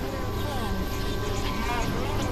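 Experimental synthesizer drone music: a steady low drone with held high tones, over which warbling tones slide up and down in pitch.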